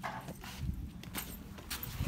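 A few scattered light clicks and taps over a low rumble.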